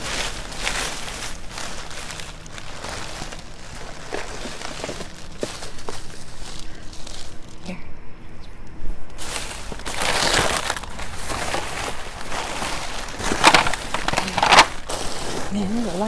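Plastic bags and cellophane flower wrappers rustling and crinkling as hands dig through a dumpster, with several louder crinkles in the second half.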